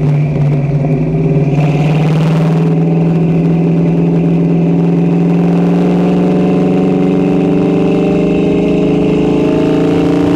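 1966 Ford Mustang's engine through its Magnaflow exhaust under way, the exhaust note climbing slowly and steadily as the car gathers speed. A brief rush of hiss comes about a second and a half in.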